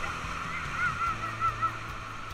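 High-pitched whooping from people in a whitewater raft: a quick run of about five short rising-and-falling cries in the middle of the stretch, over the steady rush of the rapids.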